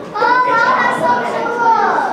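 Children's voices chattering in a classroom, one child's high voice drawn out and loudest for most of it.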